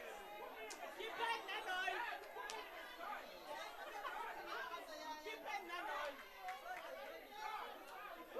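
Indistinct chatter of many people talking at once in a large chamber, with no single voice standing out. A couple of faint knocks come in the first few seconds.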